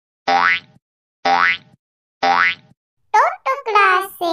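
Three identical cartoon sound effects about a second apart, each a short springy tone with a rising pitch. Near the end comes a high, sliding voice.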